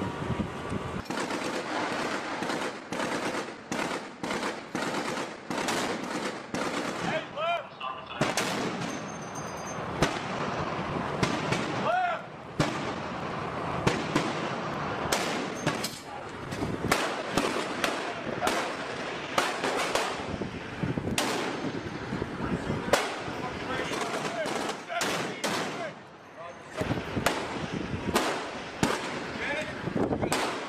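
Repeated gunfire from shipboard guns, single shots and quick strings of shots at irregular intervals, with a brief lull about 26 seconds in. Men's voices are heard between the shots.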